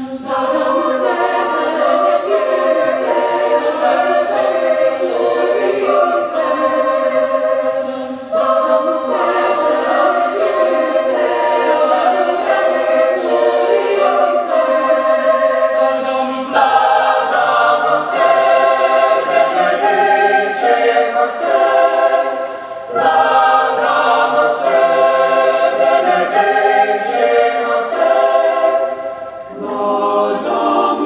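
Mixed-voice high school choir singing in several parts, in phrases broken by brief pauses for breath.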